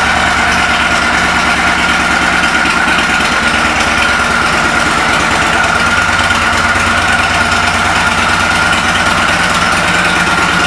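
The 2013 Victory Cross Country Tour's V-twin idles steadily, with an even low pulsing and a steady high whine over it.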